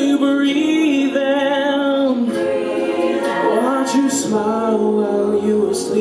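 Mixed a cappella group of men's and women's voices singing sustained chords with no instruments, moving to a new chord about two seconds in and again a little past four.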